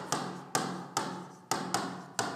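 Five sharp taps at uneven intervals, each dying away briefly in the room.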